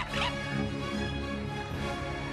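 A quick zip-like swoosh right at the start, then music with sustained chords from the sitcom soundtrack.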